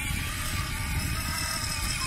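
Small electric ride-on toy motorcycle running, a faint steady motor whine over a low, even rumble.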